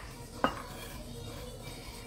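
A single sharp clink of a utensil against a dish about half a second in, over low, steady kitchen background.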